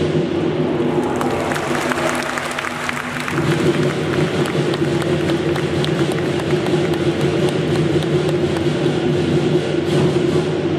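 Lion dance percussion band (drum, gong and cymbals) playing behind the pole routine, with the audience clapping and cheering. The playing thins about a second in while applause rises, then returns in full after about three seconds.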